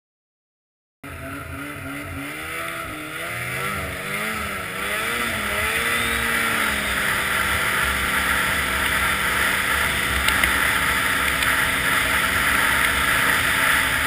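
Snowmobile engine running as the sled travels along a groomed snow trail, starting about a second in. Its pitch rises and falls for the first few seconds, then holds steady under a growing hiss.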